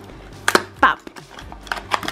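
Fingers working at a cardboard toy blind box, with one sharp snap about half a second in and a few lighter clicks of card near the end.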